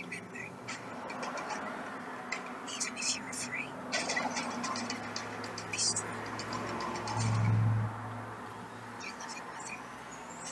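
Film trailer soundtrack playing through computer speakers: quiet dramatic music with a low swell about seven seconds in, and scattered short clicks and rustles.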